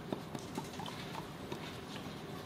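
Faint, irregular small clicks and taps, several a second, with no speech over them.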